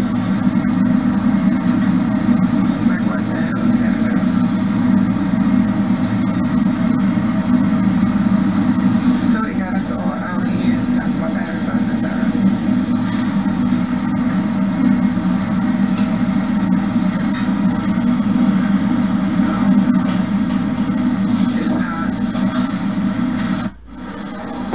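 Steady din of a busy indoor train station concourse, heard through a phone recording: crowd chatter over a low rumble.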